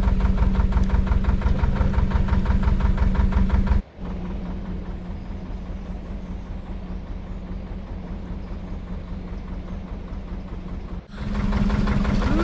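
A narrowboat's diesel engine running close by, with a steady hum and an even, rapid beat. About four seconds in it drops abruptly to a much fainter, more distant engine sound. It comes back loud just before the end.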